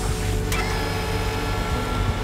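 Steady low hum of a ship's machinery, with a single sharp click about half a second in.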